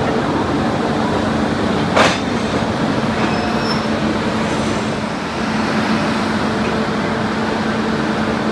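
Electric goods locomotive standing at the platform with its equipment running: a steady mechanical hum with a constant low tone. A single sharp metallic clank sounds about two seconds in.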